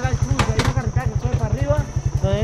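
A man giving directions in Spanish over an idling motorcycle engine, its low pulsing steady at about twelve beats a second. A faint steady high tone runs underneath, and two sharp clicks come about half a second in.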